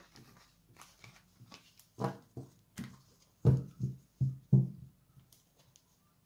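Tarot cards being gathered up off a cloth-covered table and handled, with a series of thumps as the cards and deck meet the table. The loudest four come in quick succession between about three and a half and five seconds in.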